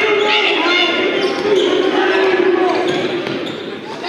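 Basketball being dribbled on a hardwood gym floor during live play, with voices calling out across the echoing gymnasium.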